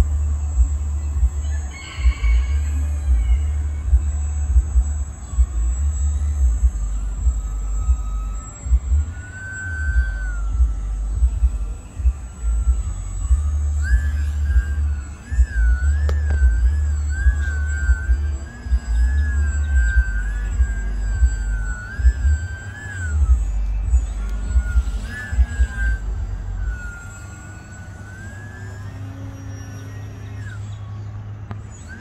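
Radio-controlled model aircraft's motor, a thin whine heard faintly that wavers up and down in pitch as it throttles and passes overhead. A gusty low rumble of wind on the microphone comes and goes over it and is the loudest sound.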